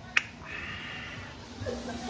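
A single sharp click a fraction of a second in, followed by faint background voices over a low steady room hum.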